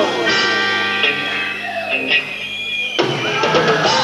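Live rock band playing an instrumental passage without vocals: electric guitars and held chords over a drum kit. The sound changes abruptly to a new chord about three seconds in.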